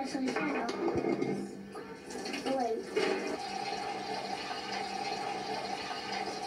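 Water running from a sink tap into a plastic jug, a steady rush that starts about two seconds in, heard through a computer's speaker. Children's voices come before it.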